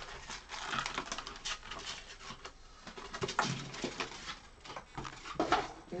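Foil trading-card packs and stacks of cards handled on a tabletop: a run of crinkles, light clicks and rustles. There are a few short vocal sounds, the loudest near the end.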